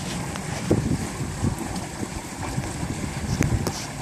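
Wind noise on the microphone aboard a small trimaran under sail: a steady low rumble, with a few faint light knocks.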